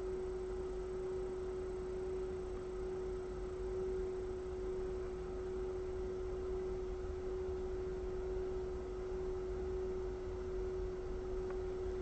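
A single steady pure tone held at one unchanging pitch, with a faint low hum beneath it.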